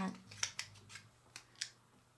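A few sharp little clicks and ticks from fingers handling a diamond-sticker craft sheet: plastic gem stickers are peeled from their backing and pressed onto the printed card. The clicks are spaced unevenly over the first second and a half.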